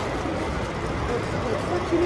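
Busy airport terminal hall ambience: many indistinct voices over a steady low rumble, with travellers wheeling suitcases and luggage trolleys across the tiled floor.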